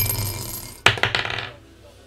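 A 20-sided die being rolled on a tabletop: a clatter, then a sharp clack just under a second in as it hits, with a brief tumbling rattle before it settles.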